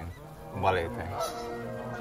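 A Canada goose honking, with the loudest honk about two-thirds of a second in. Soft held music notes come in over the last part.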